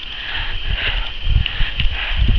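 Footsteps on a grassy track and knocks on a handheld camera as its holder walks. The thuds are irregular and low, growing busier about halfway through.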